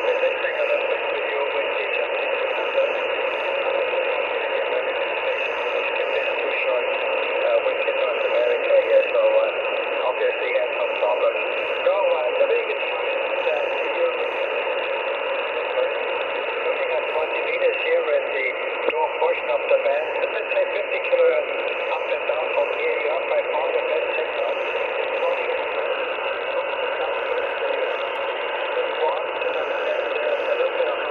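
Shortwave communications receiver playing a 20-metre single-sideband amateur radio channel: steady band-limited static with an indistinct, garbled voice buried in it.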